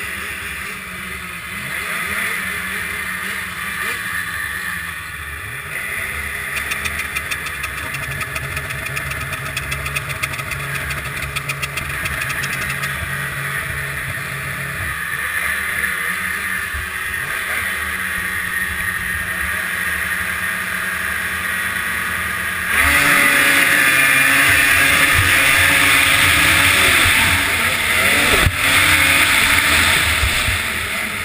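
Two-stroke snowcross race snowmobile engines running at the start line, revved in bursts, then opening up to full throttle together about three-quarters of the way through as the race starts, the camera's own sled running loud at high revs.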